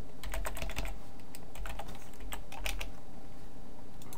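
Typing on a computer keyboard: runs of quick keystrokes with a short pause of about a second in the middle, over a faint low hum.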